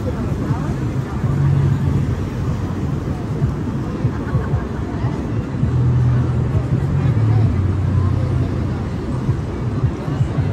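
Busy city street: vehicles pass close by with a low engine hum that swells about a second in and again from about six seconds, over steady traffic noise and crowd chatter.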